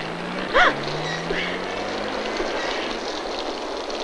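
Steady rain with a vehicle engine whose low note slowly rises as it drives off. A short, high cry cuts in about half a second in and is the loudest sound.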